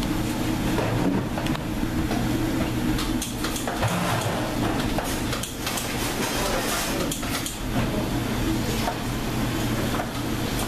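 Steady low hum of kitchen machinery, with scattered light knocks and clicks from hands and a bowl working stainless steel mixing bowls.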